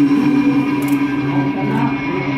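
Electric guitar music with echo: one note held for about the first second over steady lower notes.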